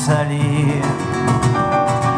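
Live band music: acoustic guitar, keyboard, double bass and drums playing the accompaniment between sung lines of a French chanson.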